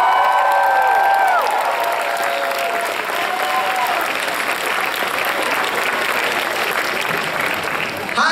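Audience applauding in a large hall, a dense steady clapping throughout. A few voices hold long drawn-out calls over it in the first second and a half.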